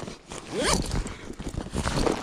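Nylon backpack zipper drawn in one quick stroke about half a second in, rising in pitch as it runs. Softer handling of the bag follows near the end.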